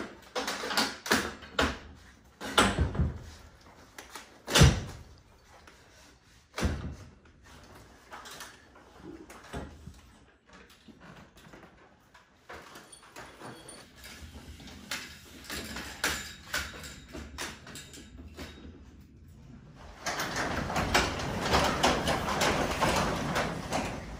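Scattered knocks and clatter of hardware being handled during the first several seconds. Then, about twenty seconds in, a newly installed LiftMaster garage door opener starts and runs steadily for the last few seconds, raising the sectional garage door.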